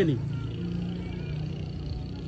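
A steady low hum in a pause between a man's words.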